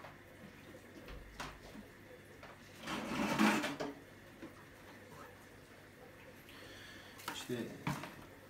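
Quiet room with a few scattered knocks and clicks and a short rustling clatter about three seconds in, the sound of things being handled and moved off to one side.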